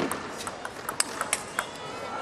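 Table tennis ball being hit back and forth in a rally, a quick run of sharp clicks as it strikes the paddles and the table, about eight in two seconds.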